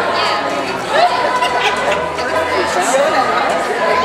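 Crowd chatter: many people in an audience talking at once, overlapping voices with no single speaker standing out.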